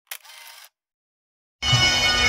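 A short click with a brief faint hiss, then silence; about a second and a half in, bagpipes start playing abruptly and loudly, with a steady low note held under them.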